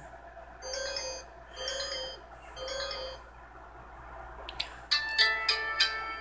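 A Samsung flip phone sounds three short electronic chimes about a second apart. Near the end a click, then the phone's multi-note power-on jingle begins as the phone boots up after being recharged from dead.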